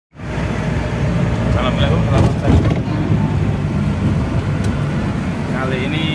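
A motor vehicle running, a steady low rumble, with brief voices about two seconds in and again near the end.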